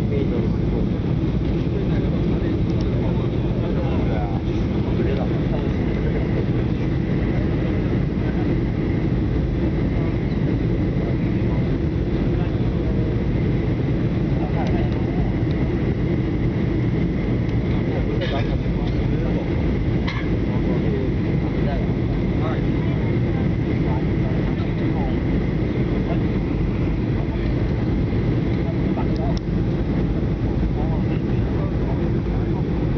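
Jet airliner cabin noise heard from a window seat: the steady, loud sound of the engines and rushing air, with a faint high steady tone over it. Faint voices of other passengers come through now and then.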